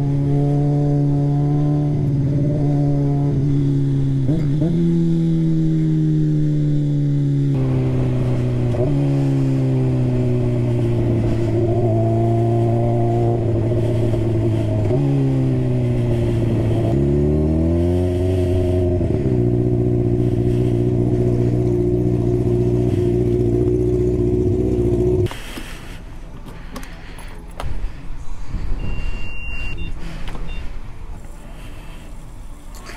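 Honda CBR600RR inline-four engine heard from on board while riding, holding steady revs with several sudden drops in pitch as it shifts up, and a dip and rise in revs about two-thirds of the way through. It cuts off suddenly; quieter clattering at a fuel pump follows, with a short beep near the end.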